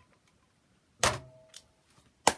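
A drinking glass set down on a hard surface about a second in: one sharp clink with a short ringing tone that dies away, otherwise near silence.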